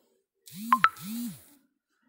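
WhatsApp message notification sound from a phone as a chat message arrives: a short chime of two quick bright pings over a low rising-and-falling tone, about a second long.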